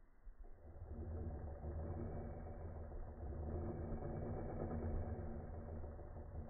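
Cordless drill motor running steadily at an even pitch, starting about half a second in.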